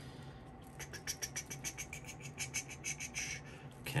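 Old Bay seasoning container shaken over watermelon slices: a faint, quick rattle of short clicks, several a second, starting about a second in and running until just before the end.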